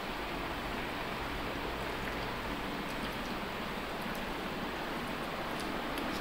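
A steady, even hiss of background noise with a few faint ticks. No distinct event stands out.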